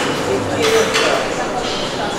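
Indistinct talk among several people, too low and overlapping to make out, with a few short hissy sounds.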